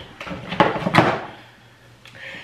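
Electric toothbrushes being handled and set down on a hard surface: about three knocks in the first second, then quieter handling toward the end.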